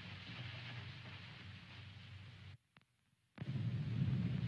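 Faint hiss and low hum of an old film soundtrack with no distinct sound effect. It fades slowly, cuts to dead silence for under a second about two and a half seconds in at the scene change, then comes back a little louder.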